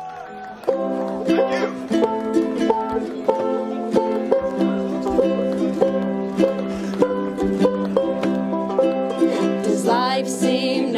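Music of plucked string instruments, starting about a second in: a quick, even run of plucked notes over a held low note.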